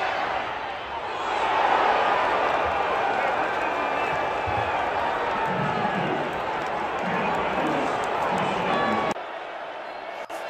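Stadium crowd noise with individual shouts rising out of it, swelling about a second in and holding. It cuts off abruptly near the end, where a quieter sound takes over.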